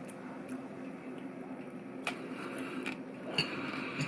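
A person chewing a mouthful of seared scallop topped with finger lime pearls: quiet, wet mouth sounds with a few small clicks, over a faint steady hum.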